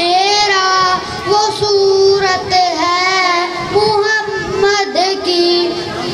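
A boy singing an Urdu naat unaccompanied into a microphone, one voice drawing out long, ornamented notes that waver and slide in pitch.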